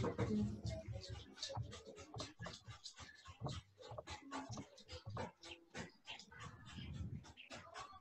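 Faint background noise over a video call: scattered small clicks and knocks throughout, with a low murmur near the start.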